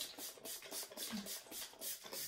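Pump spray bottle misting lavender hydrosol onto a face: a quick run of short, faint hissing sprays, about five a second.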